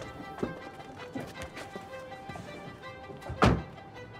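Tense background music of held tones, with a few soft knocks and one loud thump about three and a half seconds in.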